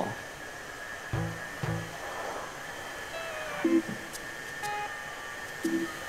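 Cordless stick floor cleaner running with a steady high whine, under soft background music with sparse notes.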